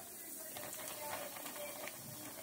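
Cornmeal-breaded catfish frying in hot oil: a steady sizzle dotted with many small crackling pops.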